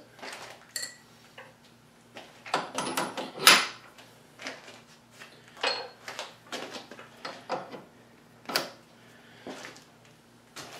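Metal parts of a South Bend 13-inch lathe's cross-slide dial assembly and ball crank handle clinking and knocking as they are handled and fitted onto the screw shaft: a dozen or so short sharp clicks at irregular intervals, loudest about three and a half seconds in, over a faint steady hum.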